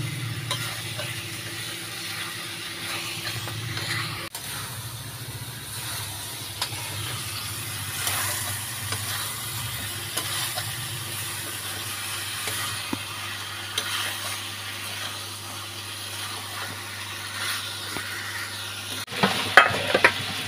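Chicken and egg curry sizzling as it is fried down in an aluminium kadai, a spatula stirring and scraping through the masala. A steady low hum runs underneath.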